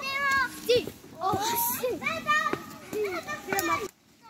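Young children chattering and calling out over one another in high voices, with a few sharp clicks among them; the sound cuts off suddenly just before the end.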